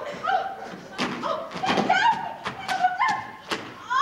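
Stage fight: a series of thuds and sharp knocks from actors grappling and landing on the stage floor, mixed with wordless shouts and cries.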